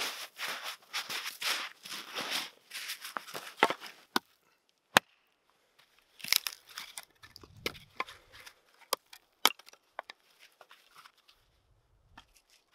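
Split firewood being handled on snow: a quick run of crunching, rasping scrapes, then scattered sharp wooden knocks and clacks as pieces are set down and knocked together, the loudest a single crack about five seconds in.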